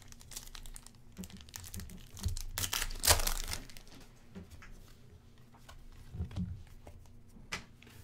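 Stiff chrome-finish Panini Select trading cards being handled and slid past one another between the fingers: a run of small clicks and scrapes, with one louder rustle around three seconds in.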